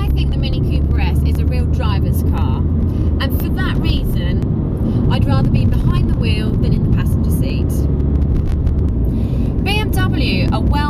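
Mini Cooper S (R53) heard from inside the cabin on the move: its supercharged 1.6-litre four-cylinder engine and the road noise make a steady low drone. A woman talks over it for most of the time.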